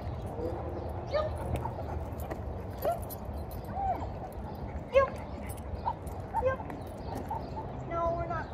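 A dog whining in short, high squeaks that rise and fall, repeating every second or so, with light scuffing footsteps and a low outdoor rumble underneath.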